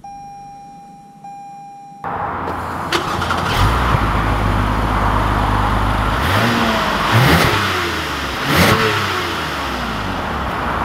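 A steady electronic beep for about two seconds, then the 2020 Toyota Camry XSE's 3.5-litre V6 exhaust comes in suddenly at idle. The engine is revved twice, its pitch rising and falling each time.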